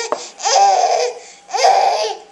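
Baby fake-crying: two loud wails, each under a second long, with a short break between them. It is a put-on cry rather than real distress.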